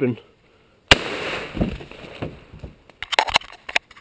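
A single blast from a Browning BPS pump-action shotgun firing 00 buckshot about a second in, its echo dying away over the next second or so. A quick run of sharp clicks follows near the end.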